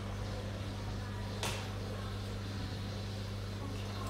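A steady low electrical hum, with one sharp click about a second and a half in.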